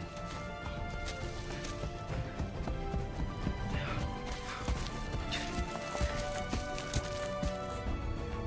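Orchestral film score with held notes, over quick, irregular footfalls of bare feet running on the ground.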